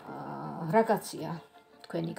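A woman's voice, drawn out and slow, with pitch bending up and down; it fades out about a second and a half in.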